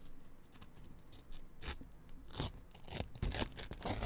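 A sheet of paper crinkled and rubbed close to a microphone as an ASMR-style trigger sound: soft rustling broken by a string of short, irregular crackles.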